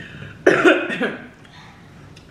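A person coughing, twice in quick succession: a sudden first cough about half a second in and a second just after.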